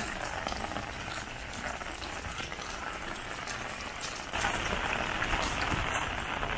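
Heavy rain falling steadily, a dense patter of drops that grows louder about four seconds in.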